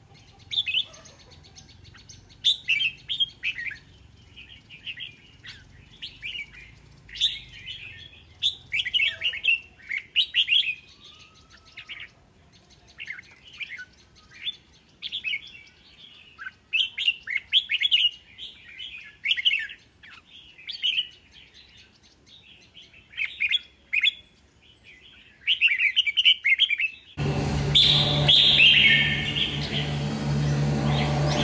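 Caged red-whiskered bulbul singing short, bright warbling phrases again and again, every second or two. Near the end the sound cuts abruptly to a louder recording, with a steady low hum and hiss under the song.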